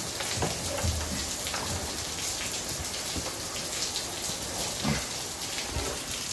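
Steady rainfall, an even hiss of rain coming down hard, with a few faint knocks.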